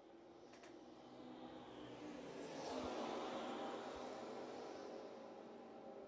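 Faint sound of racing cars' engines at speed, swelling to its loudest about three seconds in and then falling away as the pack passes.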